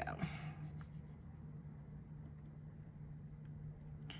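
Faint light clicks and scratches of jewelry pliers handling a small metal jump ring and chain on a paper work surface, over a low steady hum.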